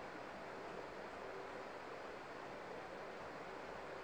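Steady low hiss of room tone and microphone noise, with no distinct events.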